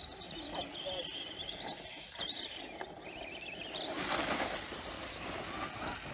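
HPI 4000kv brushless motor of an Arrma Senton 4x4 RC truck driving, with a high-pitched whine that rises and falls with the throttle. The whine climbs higher about four seconds in, together with a broad rush of noise.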